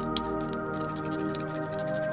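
Background music with steady held tones, over a few sharp taps of a stone pestle pounding garlic on a flat stone grinding slab (sil-batta). The loudest tap comes just after the start.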